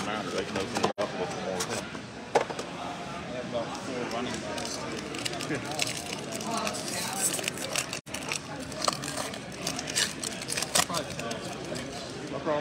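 A foil trading-card pack wrapper crinkling and being torn open by hand, in short crackly bursts, over the steady chatter of a crowded hall.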